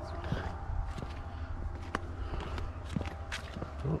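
Footsteps on a stone-paver path: irregular light steps over a steady low rumble.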